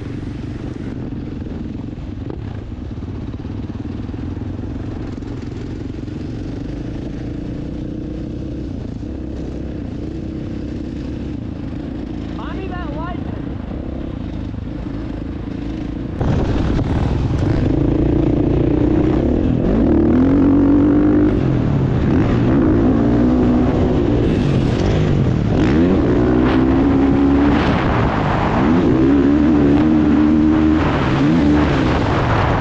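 Dirt bike engine heard from the rider's helmet camera: running steadily at low speed for about the first sixteen seconds, then suddenly louder, revving up and down repeatedly as the bike is ridden hard.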